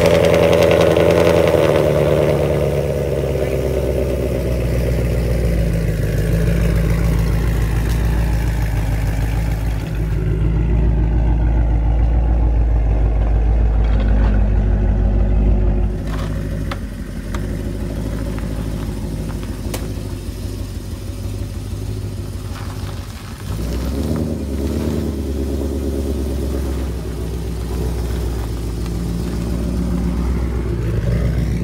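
A 2018 Ford Mustang GT's 5.0-litre V8, fitted with catted headers, running at a steady idle with a deep exhaust note. The sound changes abruptly about ten, sixteen and twenty-three seconds in, as one clip of the running car follows another.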